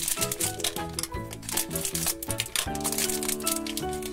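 Crinkling and rustling of a foil blind bag being torn open and handled, over steady background music.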